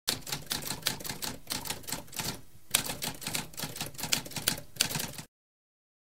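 Typewriter typing: a rapid run of key strikes with a brief pause about halfway, then an abrupt stop about a second before the end.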